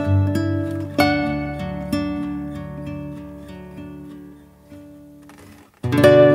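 Background music: plucked acoustic guitar notes, a new chord about once a second, each ringing and fading. Near the end the music dies away.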